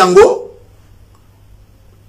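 A man's voice in a short, loud exclamation that trails off within the first half second, then quiet room tone.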